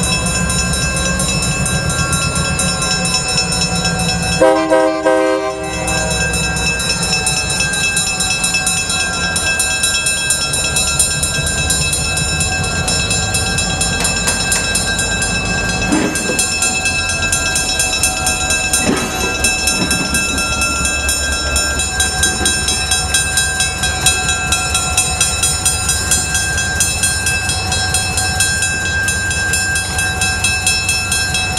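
Sacramento Northern No. 402 diesel switcher locomotive's engine running steadily, with one short horn blast about five seconds in. Two sharp metallic clanks come around the middle, and the engine note pulses more toward the end.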